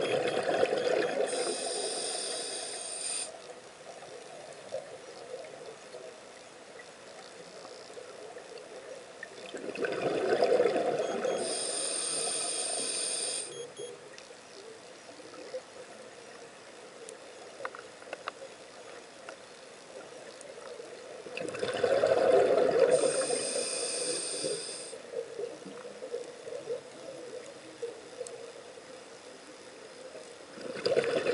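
Scuba diver breathing through a regulator underwater: three breaths about ten seconds apart. Each is a burst of exhaled bubbles followed by a high hiss as air is drawn through the regulator. Faint scattered clicks come between the breaths.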